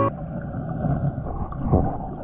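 Muffled underwater sound recorded by a submerged camera: a dull, steady churning rush of moving water with no clear tones and nothing in the treble.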